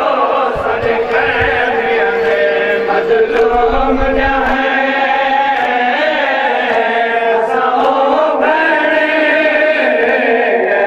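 Male voices chanting a noha, a Shia mourning lament, in long held, slowly moving melodic lines.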